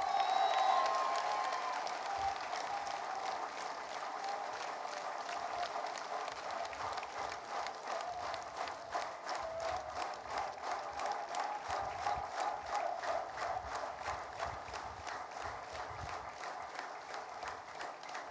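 Audience applauding steadily, with some cheering voices in the crowd near the start.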